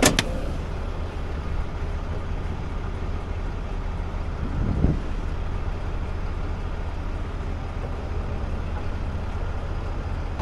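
Rollback tow truck's engine running steadily with a low drone. There is a sharp knock just after the start and a duller thump about five seconds in.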